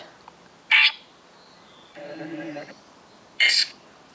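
Necrophonic ghost-box app sounding through a phone's speaker: a short burst of hiss about a second in, a brief steady pitched tone around the middle, and another hiss burst near the end. These are the app's scanning fragments, which the group listens to for spirit answers.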